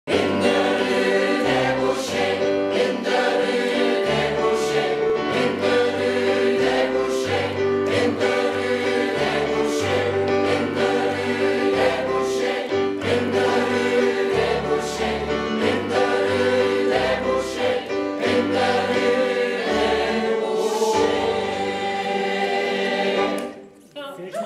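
Mixed choir of men and women singing together in parts, with sustained, shifting chords; the singing stops shortly before the end.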